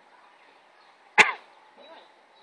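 A single sharp, loud thump about a second in, with a short ringing tail.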